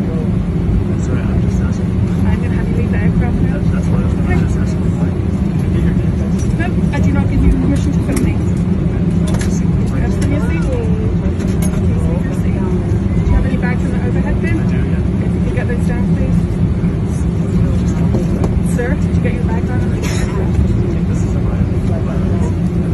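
Steady, loud low hum of an airliner cabin's air and engine noise, with faint, indistinct voices of people talking underneath.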